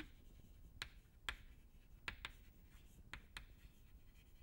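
Chalk writing on a chalkboard: faint scratching with about six sharp taps as the chalk strikes the board at the start of strokes.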